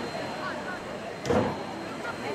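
Street ambience of passers-by talking, with a short loud sound a little past halfway through.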